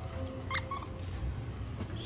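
A golden retriever gives a brief high-pitched whimper about half a second in, followed by a shorter, lower one.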